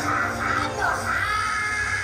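A high-pitched, squeaky character voice from the stage show speaking over background music.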